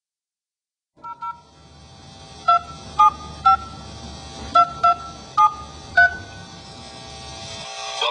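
Touch-tone telephone keypad dialing a number, each key a short two-tone beep. Two quick beeps come about a second in, then seven louder beeps at uneven spacing until about six seconds in, over a steady line hiss.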